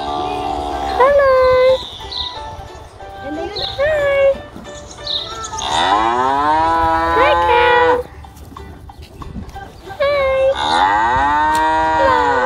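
Cows mooing: four long moos, each rising and then falling in pitch, the longest about two seconds.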